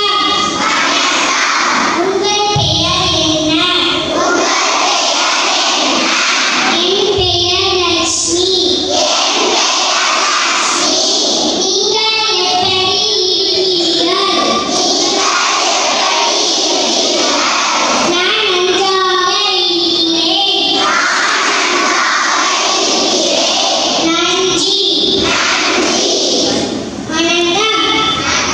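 Children singing a Tamil song into a microphone, loud and amplified, the tune repeating a phrase about every six seconds.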